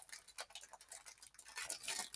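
Plastic cellophane wrapper on a stack of trading cards being peeled and torn open by hand, giving faint crackling and scattered small ticks.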